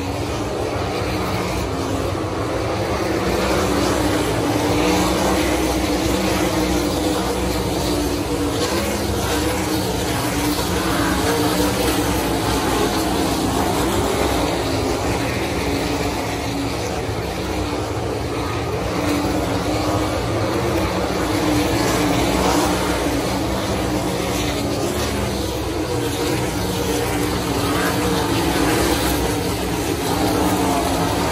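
A field of 410 sprint cars racing on a dirt oval, their 410-cubic-inch methanol V8 engines running together in one continuous loud sound that swells and eases in waves as the pack goes by.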